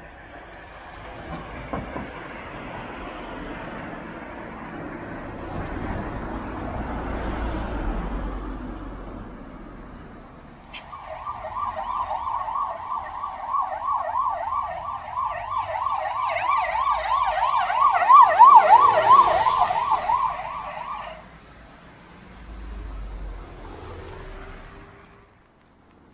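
Emergency vehicle siren on a fast yelp, a pitch sweeping up and down several times a second; it starts about eleven seconds in, grows to its loudest and cuts off sharply about ten seconds later. Before it, the rushing noise of passing road traffic.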